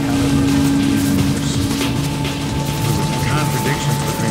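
Improvised modular synthesizer music: a held low drone tone that stops about two and a half seconds in, a higher steady tone that enters just before it, over a pulsing low pattern. Near the end, short chirping pitch sweeps, with scattered clicks throughout.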